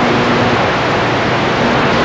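Cobra 29 LX CB radio in receive on channel 22, its speaker giving steady static hiss between transmissions while the signal meter shows an incoming signal.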